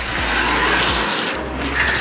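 Street traffic noise as a motor scooter passes close by, a steady rushing noise without a clear engine note.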